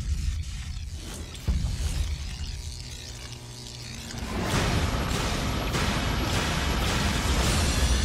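Trailer score and sound design: a deep hit at the start and another about a second and a half in, over a low rumble, then a dense, loud swell of music and effects building from about four seconds in.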